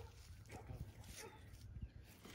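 Faint, brief whine from an Alaskan Malamute on a leash, over a low background rumble.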